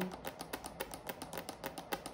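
Long fake fingernails tapping in a quick, irregular run of light clicks, several a second.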